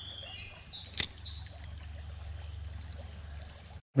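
Shallow stream trickling over a riffle, a faint steady water sound, with one sharp click about a second in; the sound cuts off just before the end.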